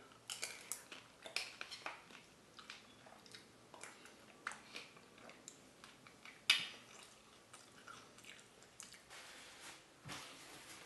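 Someone eating gazpacho: irregular, wet mouth sounds of eating, with one louder sharp click about six and a half seconds in.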